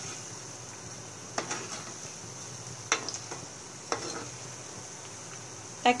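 Maggi pakoras deep-frying in hot oil with a steady sizzle, while a slotted metal spoon stirs them, knocking against the pan three times.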